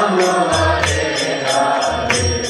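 Devotional kirtan: voices chanting a mantra to a sustained melody, with hand cymbals striking in a steady beat and a low drum.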